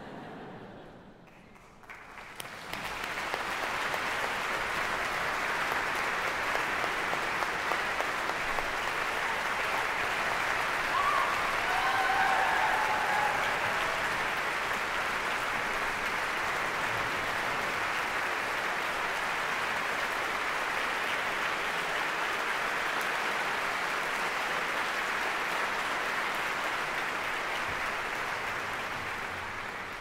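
Hall audience applauding steadily. The applause swells in about two seconds in after a near-quiet moment, holds level, and tapers slightly near the end.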